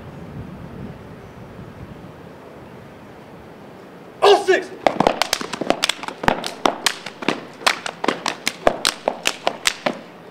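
Stepping: quiet for the first four seconds, then a short shouted call, then a fast, syncopated run of sharp hand claps and slaps on the body, about five a second.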